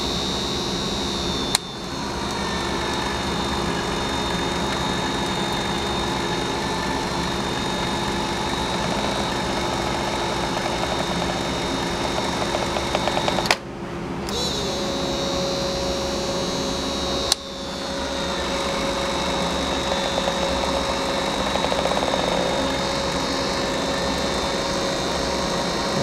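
Ryobi battery-powered caulk gun's electric motor and gear drive running with a steady whine as it pushes out polyurethane adhesive. It stops and restarts three times, twice in the first part and once in the middle.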